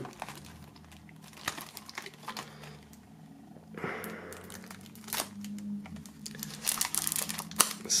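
Plastic shrink-wrap on a CD jewel case being slit with a knife and pulled off: scattered crinkling and small clicks, turning into a denser run of crackling near the end.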